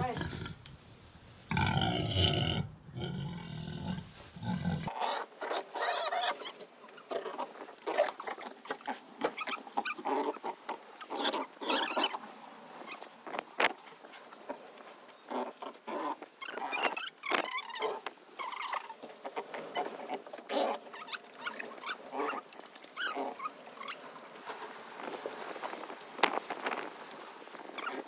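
A pig smacking and chewing as it eats fruit puree from a syringe and licks at it, with many short, irregular mouth clicks and smacks. A short call is heard in the first few seconds.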